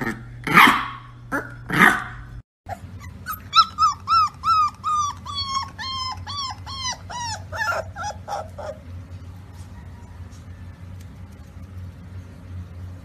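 A pit bull puppy gives three short, loud, growly barks. After a break, another pit bull puppy makes a quick run of high-pitched yips, about two or three a second, that slowly drop in pitch and die away about nine seconds in.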